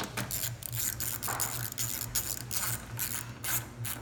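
Hand ratchet clicking in irregular runs as a terminal nut is tightened, fastening wiring to the vehicle's bus bar. Faint steady low hum underneath.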